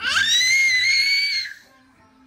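A toddler's high-pitched squeal: it rises quickly, holds for about a second and a half, then stops.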